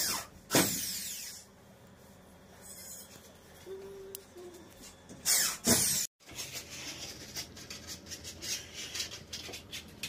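Electric drill whirring in short bursts as it drives screws through a gypsum board into the ceiling frame: two bursts at the start, the second lasting about a second, and two more about five seconds in. After a brief dropout, a string of quick scraping clicks follows.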